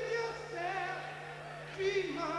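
A male rock singer's voice singing drawn-out, wavering notes with vibrato over a PA, with no band playing, and a new note starting near the end. A steady low hum runs underneath.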